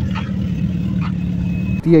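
Suzuki Hayabusa's inline-four engine running at steady held revs, an even note that stops just before the end.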